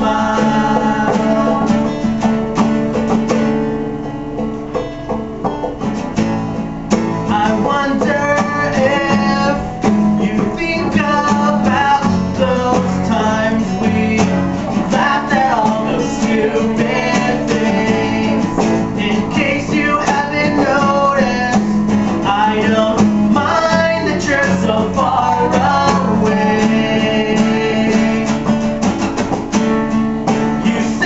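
Two acoustic guitars strummed together while a man sings a slow love song. The playing eases into a softer passage about four seconds in, then picks back up.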